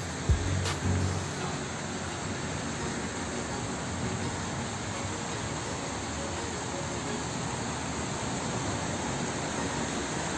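A steady wash of noise from splashing fountain jets and passing road traffic, with faint background music under it.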